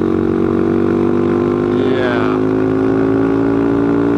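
Motorcycle engine running steadily while riding, its pitch easing slightly lower over the few seconds.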